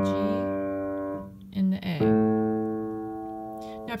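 Upright piano: a D major chord ringing and fading, then a second chord struck about two seconds in and held until it dies away.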